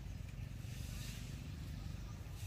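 A steady low rumble with a soft hiss over it.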